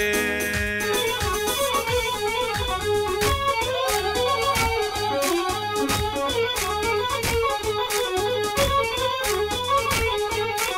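Dance music: an electronic keyboard playing a stepping melody over a steady, regular beat.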